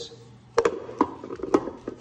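Steel torque converter parts clinking as the turbine is handled and set down on the cut-open converter: three sharp metallic taps about half a second, one second and a second and a half in.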